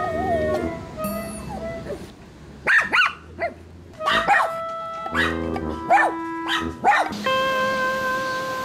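Toy poodles barking: a string of about seven short, sharp barks from a few seconds in, one dog barking along with the other in protest at a person leaving. Background music plays throughout.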